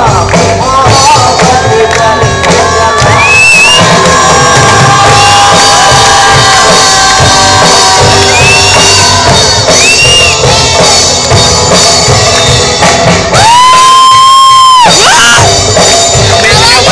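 Live band playing loud through a stage PA: drum kit, bass and guitars under a male lead vocal, with one long held note near the end.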